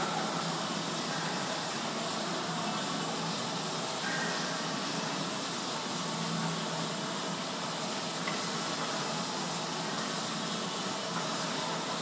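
Steady hiss of room noise, like air conditioning or ventilation, holding at an even level throughout.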